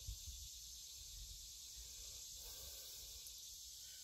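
Near silence between remarks: only a faint, steady high-pitched hiss of background noise.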